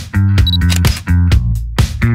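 A camera sound effect, a short high focus beep about half a second in and a shutter click, laid over background music with a heavy bass line and a regular beat.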